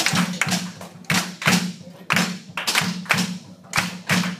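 Drum beats in an uneven rhythm, about two a second, each stroke with a short low ring.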